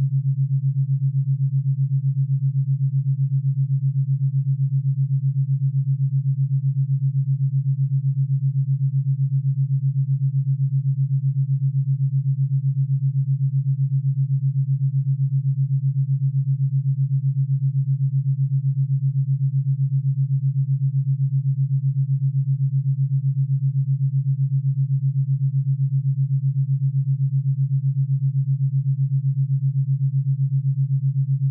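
Theta binaural beat: a low, steady sine tone that pulses evenly at the 7.83 Hz Schumann-resonance rate, heard as a smooth, fast wobble in loudness.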